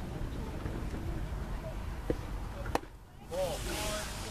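Baseball pitch smacking into the catcher's mitt, one sharp pop about three-quarters of the way through, after a smaller knock, over spectators' chatter. Voices pick up again just after the catch.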